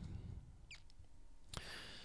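Quiet room tone with a faint, brief squeak about three-quarters of a second in and a soft breath-like hiss near the end.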